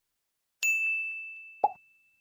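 Sound effects of an animated subscribe end screen: a single bright chime-like ding about half a second in that rings on, then a short pop about a second later as the cursor clicks.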